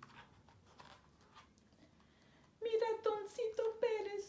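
Faint paper rustles and taps from a picture book being handled, then about two and a half seconds in a woman starts singing a slow lament in Spanish with long held notes, the cockroach's mourning song from the folktale.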